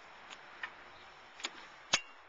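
Metal clicks from an RV awning's support arm being handled at its bottom bracket: a few light ticks, then a sharper click just before the end, the loudest of them.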